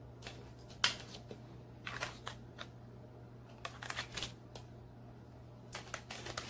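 Tarot cards handled on a wooden table: scattered short slides and light taps of card stock, in several small clusters, over a steady low hum.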